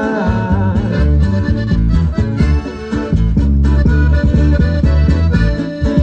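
Instrumental break of a live norteño corrido: a button accordion plays the melody over a strummed acoustic guitar and a steady low beat, with no singing.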